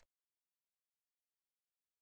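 Digital silence: a pause between spoken definitions.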